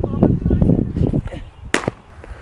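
A baseball pitch smacking into a catcher's mitt with one sharp pop near the end, after a stretch of low rumbling rustle on the catcher's body-worn mic.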